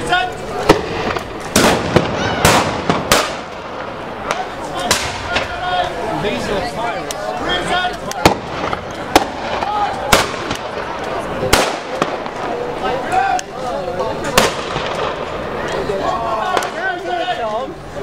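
Black-powder muskets firing blanks in a mock battle: about a dozen sharp shots at irregular intervals, several close together in the first few seconds, with voices in between.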